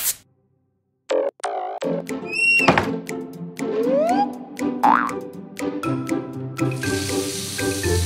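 Light children's cartoon music with springy boing and sliding-pitch sound effects, several quick swoops up and down. Near the end a tap starts running, a steady hiss of water under the music.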